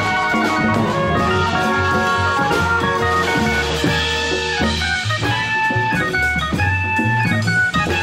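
A live band playing: drum kit and conga drums keeping the beat under guitar and keyboard notes, with a moving low bass line.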